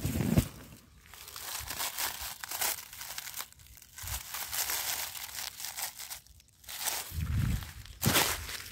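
Dry grass stalks and dead leaves rustling and crackling close up, in irregular bursts, as the undergrowth is pushed through. Dull low bumps sound at the start and again near the end.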